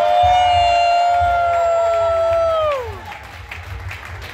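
Audience cheering, with one or two voices holding a long, high shout. The shout holds steady for a couple of seconds, then falls away about three seconds in. Low thuds run underneath.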